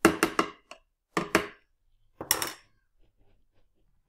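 A metal spoon knocking and clinking against the juicer, in three quick clusters of sharp hits over the first two and a half seconds.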